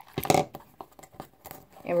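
Light clicks and taps of a plastic mini hot glue gun and wooden craft sticks being handled on a table, with a brief louder noise a moment in.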